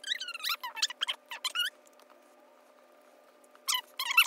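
High-pitched, squeaky, chipmunk-like voices in quick chattering runs, the sound of speech played back sped up, with a short pause in the middle.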